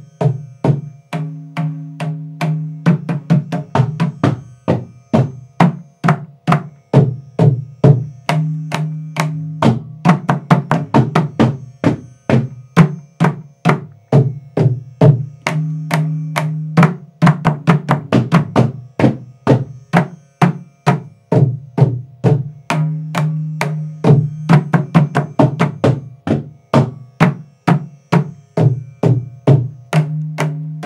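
Mridangam played continuously. Crisp strokes in fast runs alternate with ringing, pitched strokes, the phrase repeating about every seven seconds. These are patterns built on the basic beginner stroke lessons.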